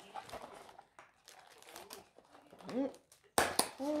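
Tea packaging crinkling and rustling in a series of small clicks as it is pried open by hand, with a sudden louder crackle about three and a half seconds in.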